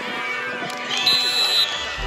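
A referee's whistle blown once, a steady high tone lasting just over half a second about a second in, over voices shouting from the sideline.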